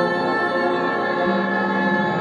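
Background music: sustained choir-like chords with slow sweeping high tones, and a lower held note coming in just past halfway.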